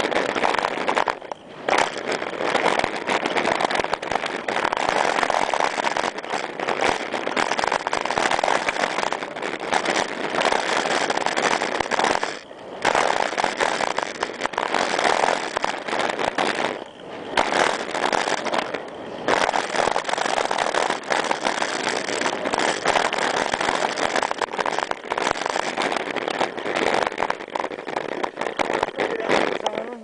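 Mountain bike riding fast down a dirt trail: air rushing over the camera microphone mixed with tyre and bike rattle. The noise is steady but drops out briefly about four times.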